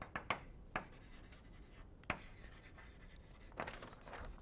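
Chalk writing on a blackboard, faint: a few sharp taps and short scratchy strokes.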